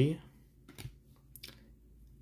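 A few faint clicks and light rustling as glossy chromium trading cards are slid and shuffled against each other in the hands.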